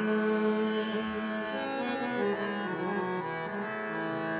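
Harmonium playing a short phrase of held, stepping notes over a steady tanpura drone, filling the pause between the singer's phrases in a Hindustani classical vocal recital.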